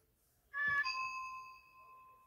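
Electronic chime from an interactive plush toy: a short note about half a second in, then a longer ringing note that slowly fades.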